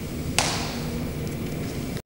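Graphite pencil on drawing paper: one quick scratchy stroke about half a second in, over a steady low room hum.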